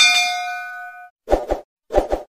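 Notification-bell ding from a subscribe-button animation, a bright chime that rings and fades away over about a second. Then two quick pairs of short pops.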